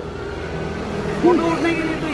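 Steady low rumble of street traffic, with quiet talking over it in the second half.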